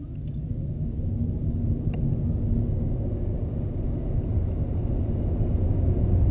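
Inside the cabin of a 2013 Nissan Leaf electric car accelerating hard at full power from near standstill to about fifty miles an hour: low road and tyre rumble with wind noise, growing steadily louder as speed builds.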